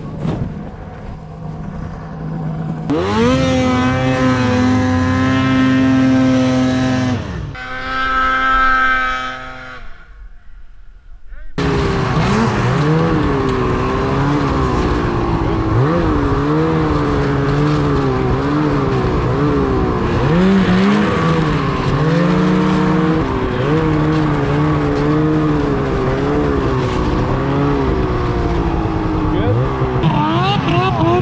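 Snowmobile engines revving across several cuts. An engine is held at a steady high pitch for about four seconds, a shorter tone then falls away, and after a brief quiet dip an engine runs on with its pitch rising and falling over and over as the throttle works.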